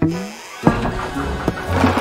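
Cartoon background music with sound effects: a short rising glide at the start, then a single thump about two-thirds of a second in as a wooden barrel is knocked over.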